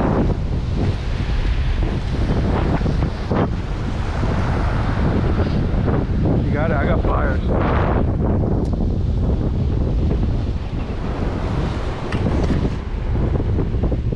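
Wind buffeting the microphone in a steady low rumble, with surf washing against the jetty rocks beneath it and a few faint voices about halfway through.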